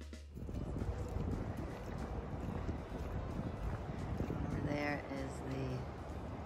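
Wind buffeting the microphone outdoors, a steady rough rush that starts as a music track cuts off in the first half second. A voice speaks briefly near the end.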